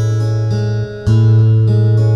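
Acoustic guitar played fingerstyle: a slow arpeggio in which a low bass note rings under higher strings plucked one at a time, about every half second, with a new bass note struck about a second in.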